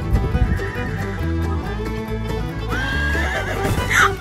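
Background music with a steady beat throughout, over which a foal whinnies in a wavering call about three seconds in, with a short sharp cry just before the end.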